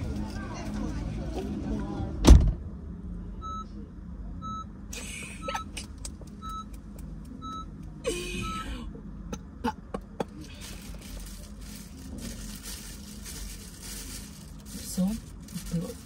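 A car door slams shut, loud and heavy, about two seconds in. Then the car's electronic warning chime beeps about once a second, six times.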